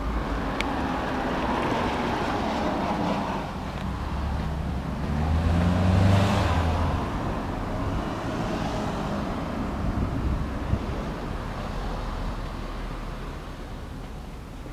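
2008 Suzuki Hayabusa's inline-four engine running through an aftermarket slip-on exhaust, swelling louder around the middle and easing off toward the end.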